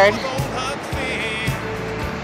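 Background music with a steady beat, about two beats a second, under a noisy haze.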